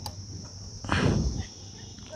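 Steady high-pitched buzzing of insects over a low rumble. About a second in comes a brief, louder pitched sound that falls slightly.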